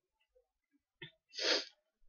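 Silence, then a faint click about a second in and a short, sharp breath drawn in by the lecturer about a second and a half in, just before he goes on talking.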